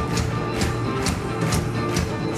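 Live rock band playing loudly: drums and cymbals keep a steady beat of hits over electric guitars and bass, with no singing.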